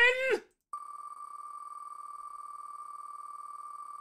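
Spin sound of the wheelofnames.com name-picker wheel: a steady high electronic tone with a fast flutter, starting just under a second in as the wheel spins.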